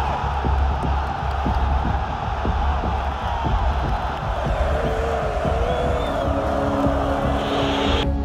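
Large stadium crowd making a continuous, loud roar of voices, with irregular low thuds running beneath it.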